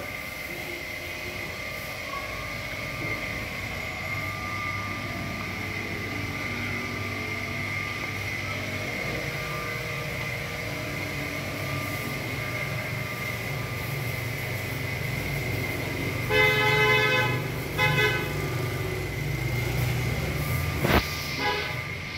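A horn sounds twice about three-quarters of the way through: a toot of about a second, then a shorter one. It sits over a steady low hum, and a single knock comes near the end.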